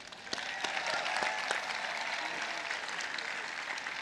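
Large crowd applauding, swelling up about a third of a second in and then carrying on steadily.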